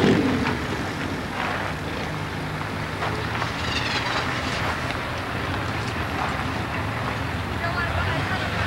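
A motor vehicle engine idling steadily with a low, even hum, under faint voices of people milling about outdoors.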